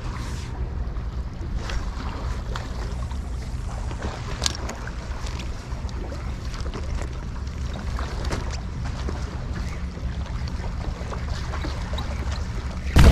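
Spinning reel and rod clicking and rattling irregularly as a metal jig is jerked and reeled in, over a steady low rumble of wind on the microphone.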